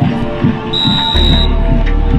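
Background music with a steady beat and deep bass. A short, steady high-pitched tone sounds for under a second near the middle.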